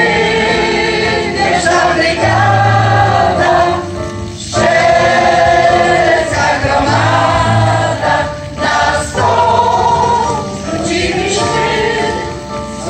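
Mixed choir of older women and men singing a Polish soldiers' song, accompanied by an electronic keyboard with sustained low bass notes. The singing pauses briefly between phrases about four seconds in and again past eight seconds.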